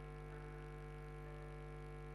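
Faint, steady electrical mains hum: a low buzz made of many steady tones, with no change in level.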